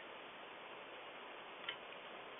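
Steady low hiss with one short click about one and a half seconds in, a computer click as the web page is zoomed in.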